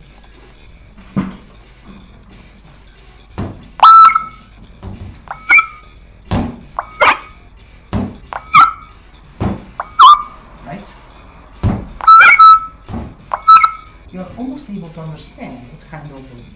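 Strike sonification from a dagger-mounted motion sensor: a run of about a dozen sharp clicks and short synthetic beeps, one per detected strike. Several beeps carry a clear tone that bends up or down, with duller thuds between them. The thrust, edge and flat components of each strike are all being turned into sound together.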